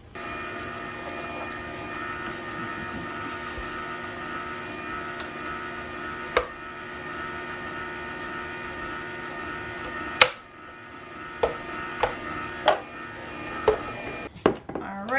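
Omega Cold Press 365 slow masticating juicer running steadily, its motor humming as lemon and apple pieces are fed through the chute. A sharp knock about six seconds in and a louder one about ten seconds in, after which the hum is somewhat quieter, then a few lighter clicks near the end.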